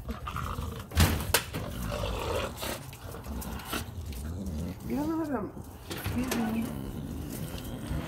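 An excited dog making a short rising-and-falling whine-like call about five seconds in, with a couple of sharp knocks about a second in and a low rumble throughout.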